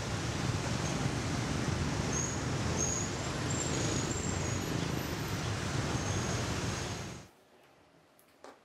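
Steady outdoor street ambience: a low rumble of road traffic with a few faint high chirps. It cuts off abruptly about seven seconds in.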